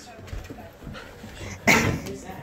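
A puppy's single short, loud bark near the end, over low rustling from a handheld phone.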